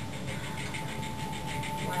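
Small electric motor running steadily with a steady whine, like a power sander switched on.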